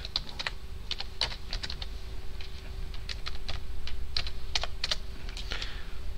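Typing on a computer keyboard: a run of irregularly spaced key clicks with short pauses between them.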